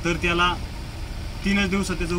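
A man speaking, with a pause in the middle, over a steady low rumble.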